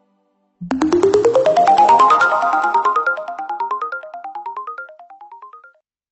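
A musical title sting: a rapid run of short ringing notes, about ten a second, climbing steadily in pitch, starting about half a second in and fading out just before the end.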